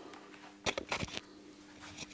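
A quick run of about four light clicks a little over half a second in, over a faint steady hum.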